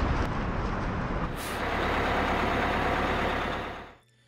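Heavy vehicle engine running, with a short hiss of air about a second and a half in, then a steady low rumble that fades out near the end.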